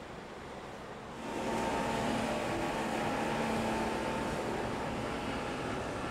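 A speedboat's engine running at speed along with the rush of its wake, growing louder about a second in and then holding steady.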